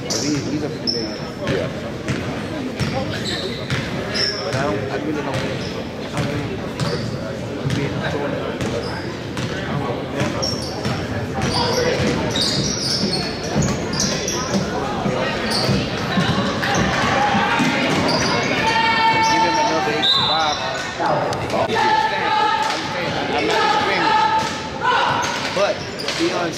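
A basketball dribbling on a gym's hardwood floor, with short high sneaker squeaks. Chatter and high voices calling out together carry through the hall, louder in the second half.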